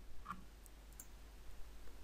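A few faint computer mouse clicks, short and sharp, within the first second.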